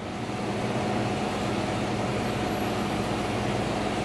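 Steady machine noise: an even rush with a low hum and a faint higher whine held under it, with no break.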